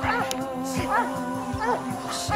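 Dogs whining in short rising-and-falling yelps, three times, over background music with a steady held note.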